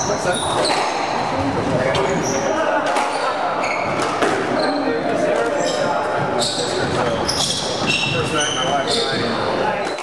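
Squash rally: the ball repeatedly smacking off racquets and walls, and court shoes squeaking in short high chirps on the hardwood floor as the players change direction, most busily in the second half. Indistinct chatter of onlookers runs underneath.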